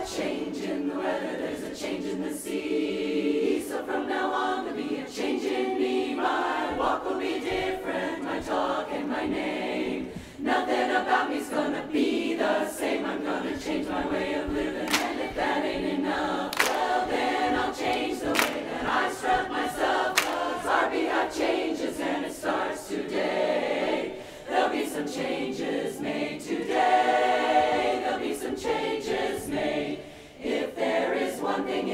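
Large women's barbershop chorus singing a cappella in close harmony, with scattered sharp percussive hits and two brief breaks in the singing, about ten and twenty-four seconds in.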